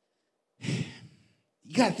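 A man's sigh, a breathy exhale into a handheld microphone about half a second in that lasts under a second, before he starts speaking again near the end.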